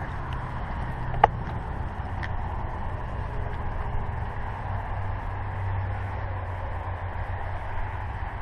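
Steady outdoor background noise, a low rumble with an even hiss, broken by a single sharp click a little over a second in.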